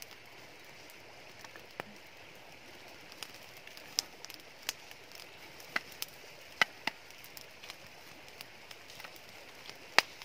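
Wood campfire crackling, with irregular sharp pops and snaps, the loudest about four seconds in and again past the middle, over a steady soft rush of flowing water.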